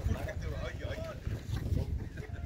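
Wind buffeting the microphone with an uneven low rumble, with distant, indistinct voices of players calling across the field.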